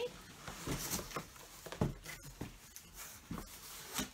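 Flaps of a large, already untaped cardboard shipping box being lifted and handled: rustling and scraping of cardboard with a few short knocks, the sharpest about two seconds in.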